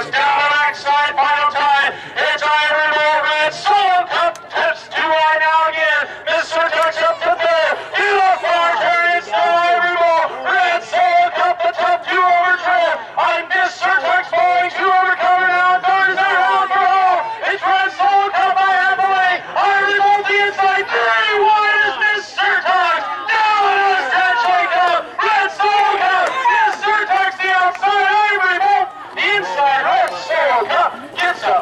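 A race announcer calling a harness race, one man's voice talking continuously and rapidly with almost no pauses.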